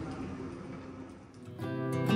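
Faint room ambience, then acoustic guitar background music starts with strummed chords about one and a half seconds in.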